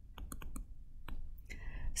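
Light taps and clicks of a stylus on a tablet screen while writing digits by hand, several in quick succession in the first half and one more about a second in.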